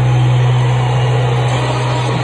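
A loud, steady low drone that does not change, carried on the arena's sound during the tribute video.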